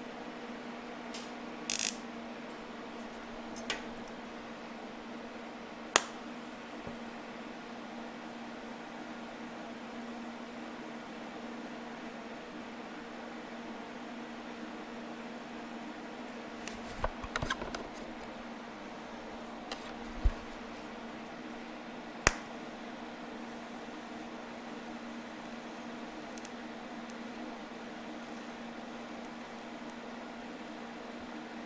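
TIG welding a steel motorcycle frame: a steady hum with a faint hiss from the welder and arc. A handful of sharp clicks and taps stand out, the loudest near the start and a cluster about two-thirds of the way in.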